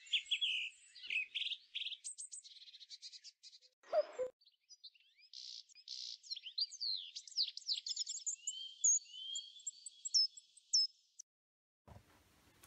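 Songbirds singing a busy run of varied chirps, trills and sliding whistles, with one brief lower-pitched call about four seconds in; the song cuts off about a second before the end.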